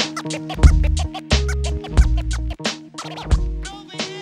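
Instrumental hip hop beat, with a deep bassline and drum hits under DJ turntable scratching; no rapping.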